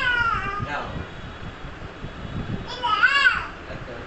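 Toddler's high-pitched excited squeals, twice: one falling in pitch right at the start and another rising and falling about three seconds in.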